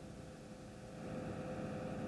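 Fire engine running steadily: a low mechanical hum under hiss, getting a little louder from about a second in.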